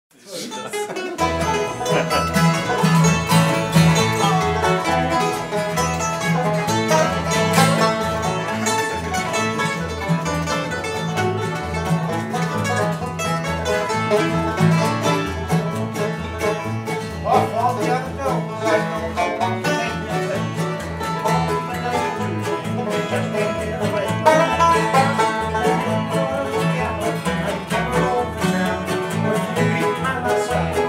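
Acoustic bluegrass band playing an instrumental lead-in: banjo, mandolin, acoustic guitars and dobro picking over a plucked bass keeping a steady beat. The music starts about half a second in and runs on without singing.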